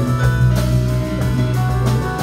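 Live jazz-fusion quintet playing: electric bass holding low notes under a drum kit with regular cymbal strikes, and sustained higher pitched tones above.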